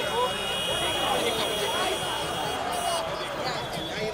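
Crowd of people talking and calling out over one another, a babble of voices without one clear speaker.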